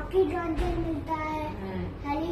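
A child's voice singing in held, sing-song notes at a high pitch.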